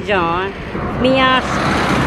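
A woman's raised, emotional voice in two drawn-out cries. A vehicle passes on the street near the end.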